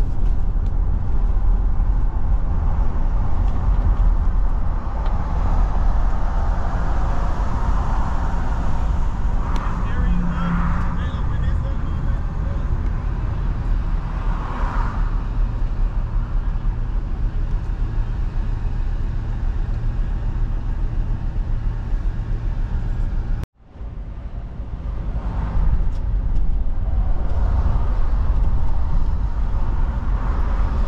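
Road noise inside a moving car on a wet street: a steady low engine and tyre rumble with tyre hiss. About 23 seconds in, the sound cuts out for a moment and fades back up.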